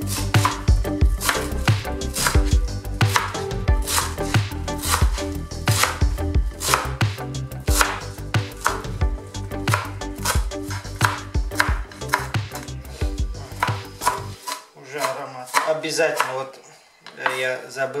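Chef's knife chopping fresh herbs on a wooden cutting board: a long, even run of quick knife strikes, about two to three a second.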